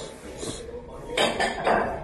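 Chopsticks and a ceramic soup spoon clinking against a ramen bowl during eating, with two louder bursts in the second half.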